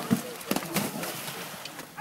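Horse's hooves striking the ground at a gallop: a few irregular thuds.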